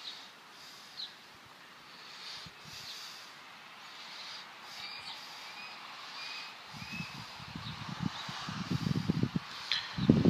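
Small birds chirping in short, slightly rising calls, repeated about once a second over a faint steady hiss. An uneven low rumble sets in about two-thirds of the way through.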